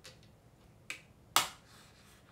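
Three sharp clicks as small hard objects are handled, the loudest a bit past halfway.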